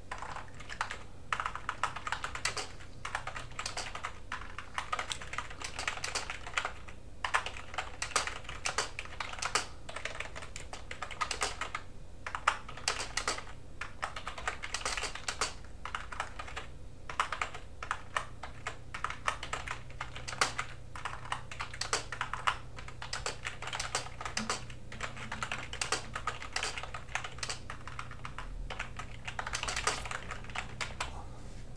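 Typing on a computer keyboard: a fast, irregular run of key clicks with a few short pauses.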